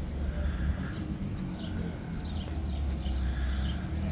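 Small birds chirping, short high sweeping notes coming several times a second, over a steady low rumble.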